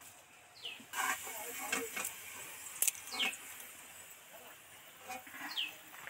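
Rustling with a sharp click for about two seconds, as fried papad pieces in a steel bowl are handled. A short, high falling chirp recurs three times, about two and a half seconds apart.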